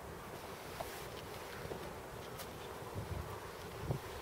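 Steady outdoor background noise with low rumbling gusts of wind on the microphone, strongest near the end, and a few faint ticks.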